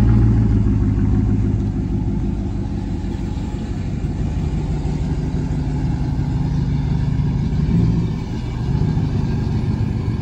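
Ram 1500 pickup's 5.7 Hemi V8 running at low revs through its exhaust as the truck reverses and manoeuvres, a steady low rumble that swells briefly and dips just before eight seconds in.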